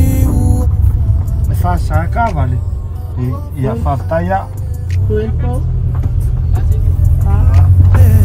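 Steady low road and engine rumble inside a moving Mitsubishi van's cabin, with people talking over it for a few seconds in the middle.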